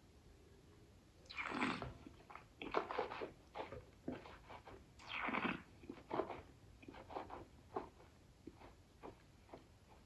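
A wine taster sipping red wine from a glass, then working it around the mouth: a longer noisy sip near the start, a second drawn-in sip about five seconds in, and many short wet mouth clicks and smacks between and after them.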